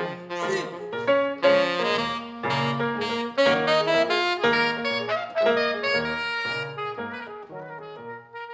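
Tenor saxophone playing a solo line of quick, changing notes over a lower accompaniment in a jazz arrangement of a Korean folk song, growing softer near the end.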